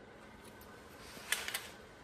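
Quiet room tone with a few brief, soft clicks and rustles about a second and a half in.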